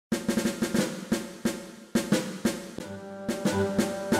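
Music opening with a drum intro of quick, sharp snare-like strokes. Sustained bass and other pitched instrument notes come in about three seconds in, starting the hymn's accompaniment.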